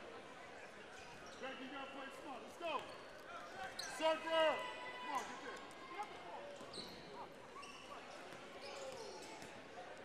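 Basketball bouncing on a hardwood gym floor as a player dribbles it up the court, with faint voices of players and spectators in the gym.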